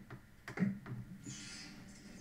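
A few light clicks, then faint audio of a video intro starting to play through a TV's speakers: a soft hiss with a low hum beneath it.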